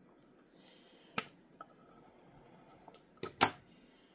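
Scissors snipping at the wire ties that hold an orchid to a wooden mount: several short, sharp clicks, the loudest near the end.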